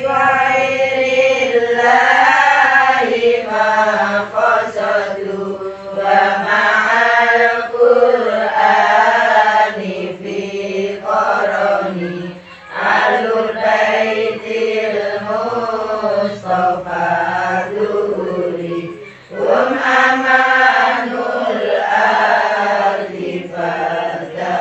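A group of girls chanting Arabic sholawat (devotional verses in praise of the Prophet Muhammad) together in unison, without drums, in long sung phrases with a short break about halfway and another about three quarters of the way in.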